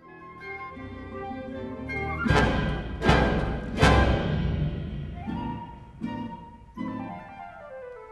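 Live chamber orchestra playing contemporary concert music: strings and winds build to three loud accented full-ensemble hits about two, three and four seconds in, followed by held wind notes and a falling line near the end.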